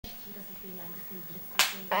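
Faint murmur of a voice in a small room, then one sharp click about a second and a half in, followed right away by an adult's voice starting to speak.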